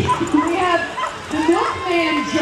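A dog barking several times in short calls, with people talking around it.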